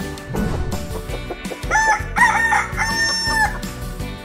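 A rooster crows once, a cock-a-doodle-doo that swoops up, wavers and ends on a long held note through the middle, over a short intro jingle.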